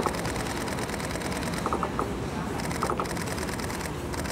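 Still-camera shutters firing in three quick bursts of three or four clicks each, over steady outdoor background noise.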